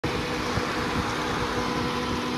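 Chevrolet Equinox V6 engine idling steadily, heard close with the hood open: an even hum with a few constant tones.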